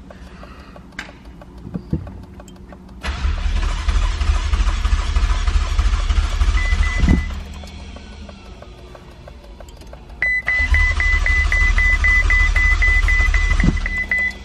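Ferrari 488 Spider's starter cranking its twin-turbo V8 twice, about four seconds each time, without the engine catching. A high warning chime beeps rapidly through the second attempt. The car will not start, which the owner suspects is down to fuses or too little fuel.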